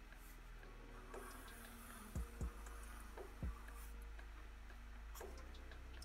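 A felt-tip marker drawing faintly across paper over a steady electrical hum. A few soft ticks come between about two and three and a half seconds in, and another near the end.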